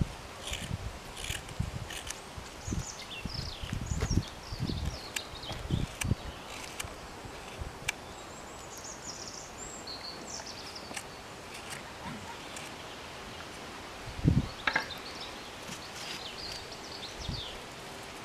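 Hook knife cutting into the bowl of a wooden spoon: a run of short scraping cuts, mostly in the first half, with a few more near the end. The sound of the cuts changes as the bottom of the bowl thins out, though it is not thin enough yet. Low gusts of wind bump the microphone.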